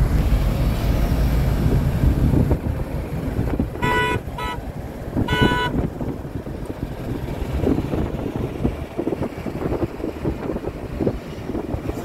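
Road and engine noise from a car moving in city traffic, heard from inside the cabin. About four seconds in a vehicle horn toots three times in short blasts, two close together and then one more.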